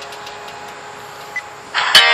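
Low steady hiss with one short high beep, then near the end a recorded song with guitar starts playing loudly through the small speaker of an Olympus digital voice recorder.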